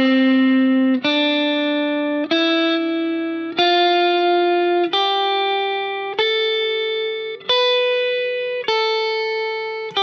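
Fender Stratocaster electric guitar playing the G major scale slowly in its fourth shape, one picked note about every 1.3 seconds, each left to ring. The notes climb step by step and turn back down about three-quarters of the way through.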